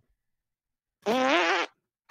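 A second of dead silence, then one short, buzzy, pitched vocal-like sound lasting about half a second.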